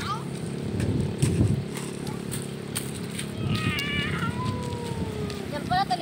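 A young child's high-pitched voice, a short squealing call about three and a half seconds in and a few more brief calls near the end, over a steady low hum. Scattered sharp clicks of pebbles crunching underfoot.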